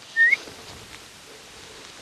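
A single short whistled chirp, rising in pitch, from an animal, over a steady outdoor hiss.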